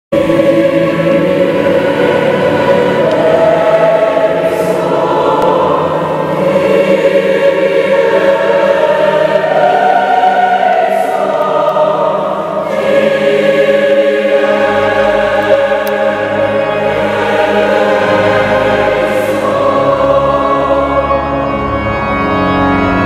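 Mixed choir of men and women singing a slow, sustained piece. Low steady bass notes join beneath the voices about two-thirds of the way in.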